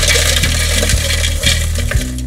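Hard, brittle pieces of dried sugar-beet sugar poured into a plastic food processor bowl, clattering and rattling against it in a steady stream of small hard impacts.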